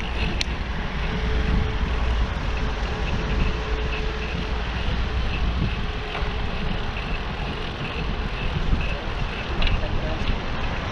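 Steady wind rush and low rumble from riding a bicycle, heard on a handlebar or helmet camera, with motor traffic running on the road alongside.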